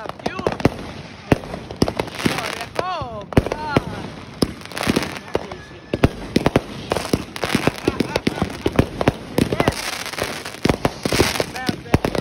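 Aerial fireworks going off in rapid succession: many sharp bangs and pops of bursting shells, with stretches of hiss between them.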